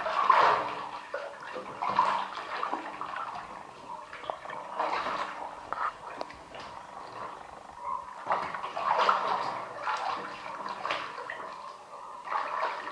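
Water sloshing and splashing in a filled bathtub as sneakered feet move through it among submerged shoes, in irregular surges every second or two.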